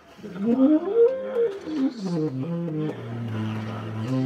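Tenor saxophone playing a melodic phrase: a run that climbs by steps and comes back down, ending on a low held note near the end.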